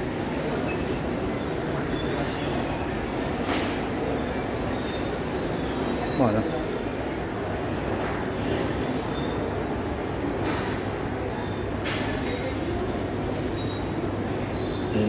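Steady background din inside a busy food hall: a low rumbling hum with murmuring voices underneath and a few sharp clinks, one about three and a half seconds in and two more near the end.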